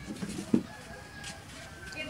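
A bird calling with a thin, drawn-out note in the second half. A sharp click comes about a quarter of the way in.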